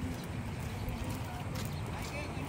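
Outdoor riverbank ambience: a steady low rumble of wind on the microphone, with faint distant voices and a few light clicks like footsteps on concrete.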